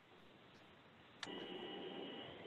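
Near silence on a conference call line, then a sharp click a little over a second in as a participant's line opens, followed by faint open-line hiss with a thin, steady high whine.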